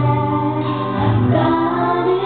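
A female singer performing a gospel song live into a microphone, over full musical accompaniment with a steady bass line.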